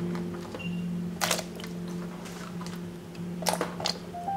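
Background music with held low notes, over a few short knocks and plops as habanero peppers are dropped into a wooden bowl of water, the clearest a little over a second in and near the end.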